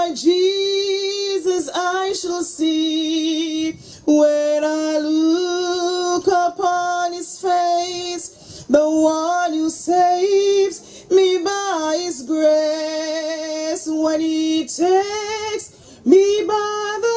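A woman singing a slow hymn solo into a microphone, holding long notes with vibrato and pausing briefly for breath between phrases.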